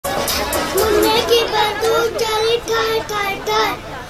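A young boy's high voice reciting in a rhythmic, sing-song chant, many syllables held on the same level pitch.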